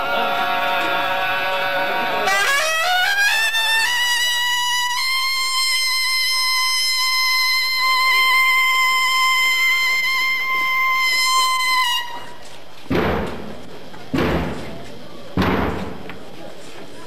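A trumpet plays a short rising run of notes, then holds one long, steady high note for about seven seconds before cutting off. Three slow, heavy thumps follow, about a second and a quarter apart.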